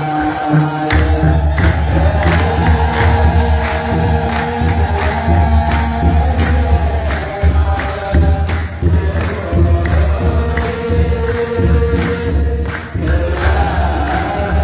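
Ethiopian Orthodox wereb: a group of clergy chanting a hymn in unison over a steady beat of kebero drum and jingling percussion. The deep drum comes in about a second in.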